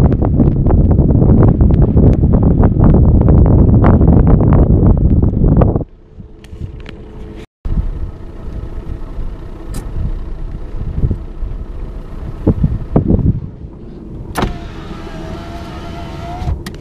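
Loud wind rushing and crackling on the microphone for about six seconds. It cuts off sharply, and after a brief dropout comes the steady, quieter rumble of a Fiat Punto driving on a snow-covered road, heard from inside the cabin, with scattered knocks.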